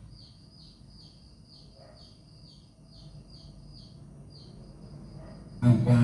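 A small bird chirping repeatedly and faintly: short, falling, high-pitched chirps about three times a second, stopping near the end.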